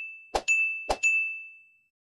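Subscribe-and-bell animation sound effects: two short clicks, each followed by a bright, high bell-like ding that rings on and fades away. The second ding dies out near the end.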